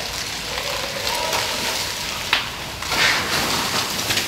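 Truck fire burning intensely, a dense crackling hiss with one sharp pop a little past halfway and a louder surge of noise about three seconds in.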